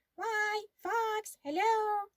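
Speech only: a woman reading aloud in a high-pitched character voice, three drawn-out words, 'Why, Fox, hello!', the last one rising.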